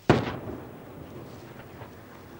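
A single sharp, loud blast that echoes and dies away over about a second.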